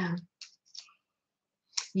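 Two short, faint snips of scissors cutting small fabric scraps, about half a second and three quarters of a second in, after the tail of a spoken word.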